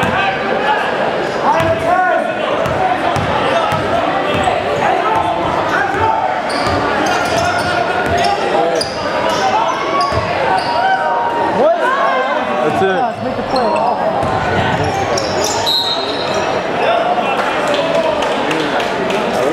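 A basketball bouncing on a gym's hardwood floor amid the crowd's chatter and shouts, echoing in the large hall.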